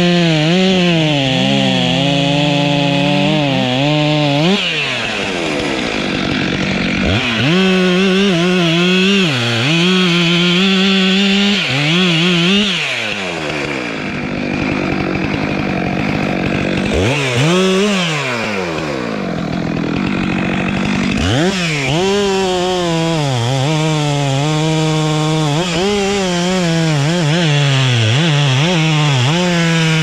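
Stihl MS 500i chainsaw, a fuel-injected two-stroke, cutting wood at full throttle, its pitch sagging under load. Between cuts it drops back to idle three times, with one quick rev in the middle, before running steadily at high revs through the last third.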